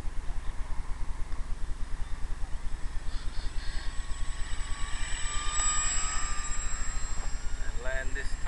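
Radio-controlled model autogiro flying overhead: its motor and propeller give a thin wavering whine that grows louder about five to six seconds in, over a steady low hum.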